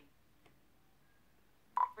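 Mostly quiet room tone. Near the end, the Galaxy S7's Voice Assistant gives a short click-tone as an icon is tapped, then its synthesized voice starts to announce the selected app.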